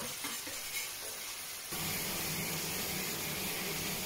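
A pan of pasta in salt cod sauce simmering and sizzling on a gas burner, with a few light clicks in the first second. Partway through, the sound steps up and a steady low hum joins the sizzle.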